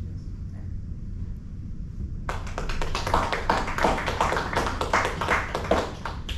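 A small audience clapping, breaking out suddenly about two seconds in, with individual hand claps distinct and growing louder toward the end.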